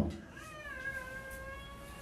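A faint, high-pitched, drawn-out vocal call, about a second and a half long. It rises at the start, then holds and sinks slowly.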